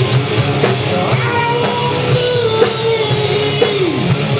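A rock band playing live in a rehearsal room: distorted electric guitars over a drum kit keeping a steady beat. One long held note slides down in pitch near the end.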